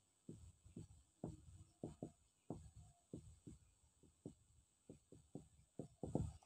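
Faint, irregular short strokes of a marker writing on a whiteboard, about a dozen in a few seconds.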